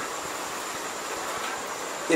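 Steady background hiss with a faint high whine running through it, unbroken by any event.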